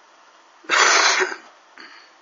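A person gives one loud cough about two-thirds of a second in, followed by a faint short catch of breath near the end.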